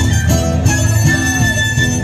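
Andean carnival dance music from Ayacucho, a melody of held notes over a repeating bass line.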